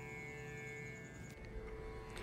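Faint instrumental background music with a few steady held tones.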